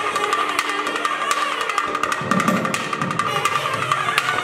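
Tamil temple drum music: thavil barrel drums played in fast, dense strokes over a steady held high tone. The drumming thickens with heavier low strokes a little past the middle.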